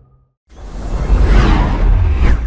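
A loud whoosh transition sound effect with a deep bass rumble, swelling in about half a second in after a brief dead gap.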